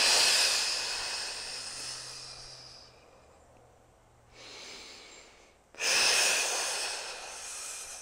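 A woman's two long, forceful exhales through pursed lips, each a hiss of air that starts sharply and fades over two to three seconds, with a short, quiet inhale between. These are core-bracing breaths, hugging the belly in to engage the transverse abdominis.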